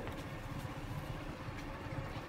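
Faint, steady running of a small motorbike engine as the bike rides along a dirt trail.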